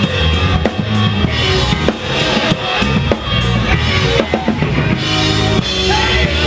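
Live rock band playing an instrumental passage: a drum kit beating steadily with bass drum and snare hits over distorted electric guitars and bass guitar.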